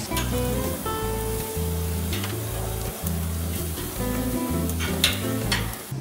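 Chicken and vegetable skewers sizzling on a hot grill grate, with background music's held bass notes over it. A sharp click sounds about five seconds in.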